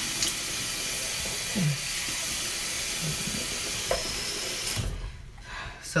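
Bathroom sink tap running warm water with a steady hiss, stopping about five seconds in.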